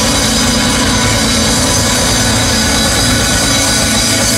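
Rock band playing live, with electric guitars, keyboard and drums: a loud, dense, steady wash of sound in an instrumental stretch without singing.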